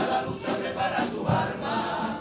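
A men's carnival group singing together in Spanish, accompanied by guitar and a bass drum.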